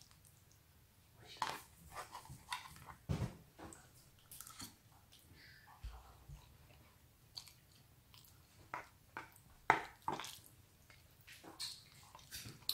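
A person chewing a mouthful of instant noodles, quiet, with scattered short clicks and scrapes of a metal fork against the cardboard noodle box.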